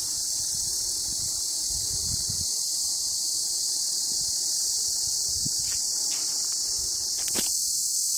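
A steady, high-pitched chorus of insects, unbroken throughout, with a faint low rumble underneath.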